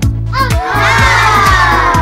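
Funky backing music with a steady beat, over which a group of voices gives a long shout from about half a second in, falling in pitch as it goes.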